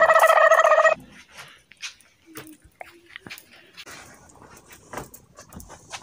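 A loud, high-pitched whine with a wavering edge that ends about a second in. After it come faint rustles and small clicks.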